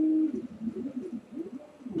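A bird's low cooing: a held note at the start, then softer wavering notes.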